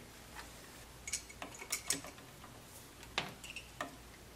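Faint, irregular small clicks and taps of continuity tester probe tips and a 3-way switch's metal screw terminals being handled as the probes are moved between terminals.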